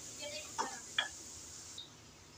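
Wooden spoon stirring a tomato-and-spice masala in an aluminium karahi, with two short clicks of the spoon against the pan about half a second and a second in, over a faint sizzle of the masala frying down.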